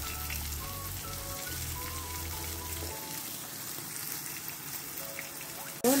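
Oil sizzling steadily around cornstarch-coated pork belly pieces shallow-frying in a pan.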